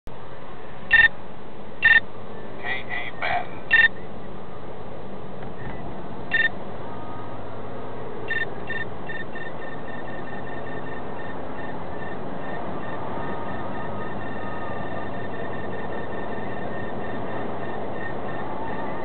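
Beltronics STI Magnum radar detector beeping an alert for Ka-band (34.7) Stalker police radar: a few separate beeps in the first seconds, then from about eight seconds a continuous run of rapid beeps. Underneath is the car's steady road and engine noise in the cabin.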